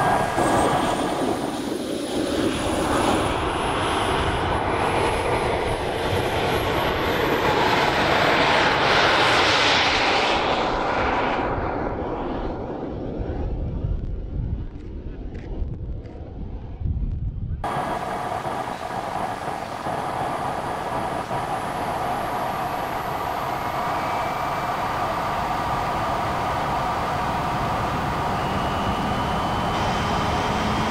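The small model jet turbine of an RC car running at full throttle: a high whine rising in pitch over the first several seconds, over a steady rush of air as the car speeds along. About halfway through, the whine fades to a duller low rumble, then snaps back abruptly to a steady close whine with air rushing.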